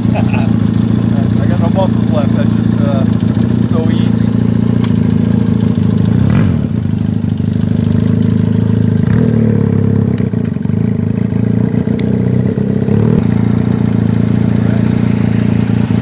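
1970 Honda CD175's single-carburettor parallel-twin engine running through new dual megaphone mufflers, just kick-started: it idles steadily, then is revved as the bike rides off.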